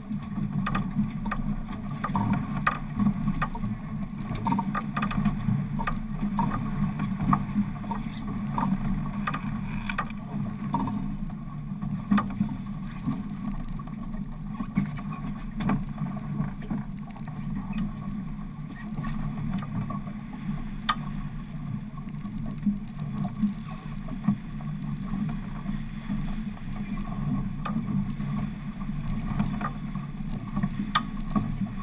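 A fishing boat's engine running with a steady low hum, under water washing against the hull, with scattered light knocks and clicks.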